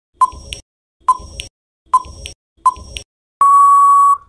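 Quiz countdown timer sound effect: four short beeps a little under a second apart, each followed by a small click, then one long steady beep near the end signalling that time is up.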